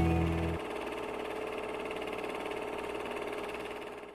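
The closing seconds of a rock song dying away. The heavy bass stops about half a second in, leaving a faint lingering ring that fades out at the very end.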